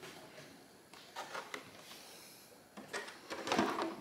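Plastic RC rally car body shell being handled and set down onto its chassis: a few faint knocks and scrapes, busier in the last second.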